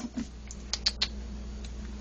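Dry cat food kibble clicking in a bowl: about five light, sharp clicks in the first second, then only a faint low hum.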